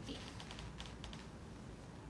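A few faint, irregular light clicks over quiet room tone.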